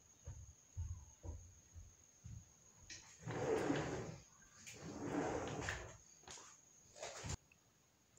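Faint handling and movement sounds of someone carrying a smartwatch: soft scattered thumps, then two longer stretches of rustling, with a few short clicks near the end.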